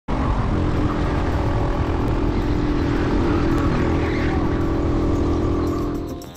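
A racing kart's engine running at a steady, high speed, heard from an onboard camera, with a heavy low rumble of wind on the microphone. The sound fades out near the end.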